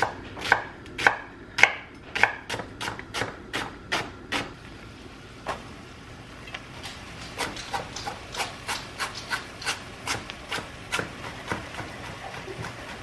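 Chef's knife chopping vegetables on a wooden cutting board: a run of sharp knocks, two to three a second, then a lull with a single knock, then a faster run of knocks in the second half.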